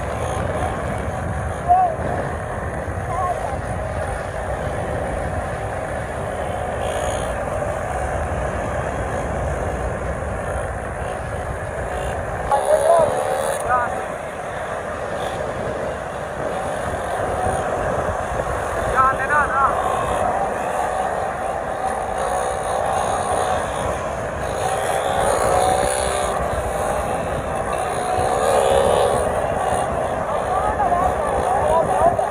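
Several small motorcycle engines running as the bikes ride along the road, with wind rumbling on the microphone. The pitch rises and falls at times as the engines are revved.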